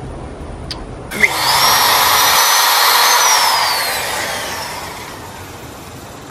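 Power drill boring a test hole into a wood board: the motor whines up about a second in and runs steadily, then its whine falls as it winds down and the noise fades away over the last couple of seconds.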